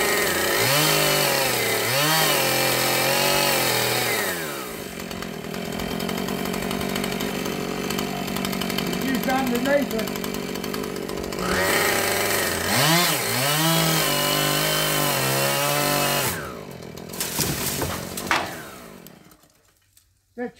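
Chainsaw cutting through a gum tree limb: two runs of revving under load with a lower idle between them. Near the end there is a sharp crack, and then the saw cuts out.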